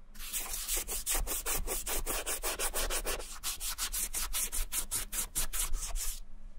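A cotton ball wetted with acetone dye remover rubbed briskly back and forth over an Adidas Superstar sneaker's upper, about four or five rubbing strokes a second, stripping old colour before re-dyeing.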